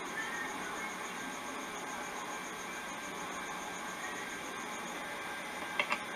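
Steady low hiss of a consumer camcorder's tape and built-in microphone picking up a quiet night, with a faint pulsing high tone that stops about five seconds in and a couple of short clicks near the end.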